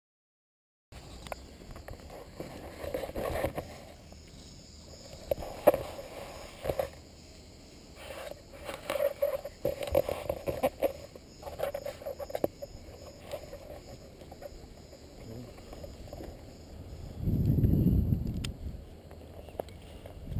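Paragliding harness and gear being handled close to a helmet camera's microphone: scattered clicks and rubbing, starting about a second in. A low rush of wind on the microphone comes near the end and is the loudest sound.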